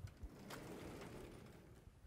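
Sliding chalkboard panel being moved along its track: a knock, then a steady rumble for over a second.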